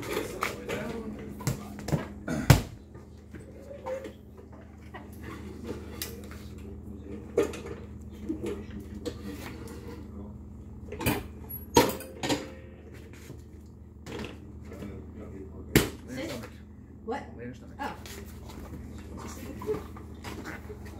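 Scattered sharp knocks and clicks from movement and handling in a small tiled room, the loudest about two and a half seconds in, twice around eleven to twelve seconds in and once near sixteen seconds, over a steady low hum.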